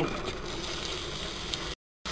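Chopped onion dropping into hot oil in a pressure cooker and starting to sizzle, a steady hiss with a few light patters of pieces landing. It cuts off suddenly near the end.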